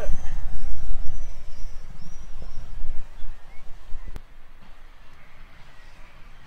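Wind rumbling on the microphone in uneven gusts, with a few faint high chirps. It cuts off with a sharp click about four seconds in, leaving a quiet, even outdoor hiss.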